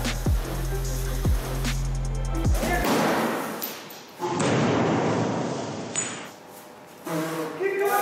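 Music with deep bass notes and falling swoops, then a thump and a few seconds of loud rushing noise as a paint bottle swung as a pendulum comes down on the plastic-sheeted floor, spilling its blue paint.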